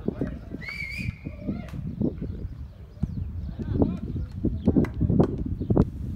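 Indistinct voices of people talking and calling out, with one high whistle-like call about a second in that rises and then holds briefly.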